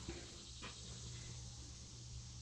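Quiet shop room tone: a faint steady low hum, with one faint tick about two-thirds of a second in.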